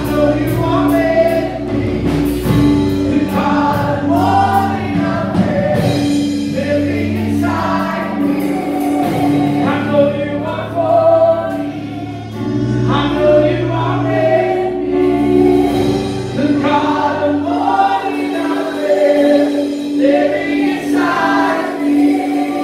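A live Christian worship song: a woman and a man singing together over sustained electric keyboard chords and acoustic guitar.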